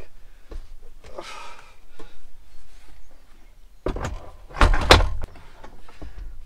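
Knocks and clunks of an old VW Westfalia swing-out table top being fitted onto its metal swing-out leg and locking bracket: a few light knocks and a faint scrape in the first two seconds, then a cluster of loud clunks about four seconds in as the table goes onto the mount.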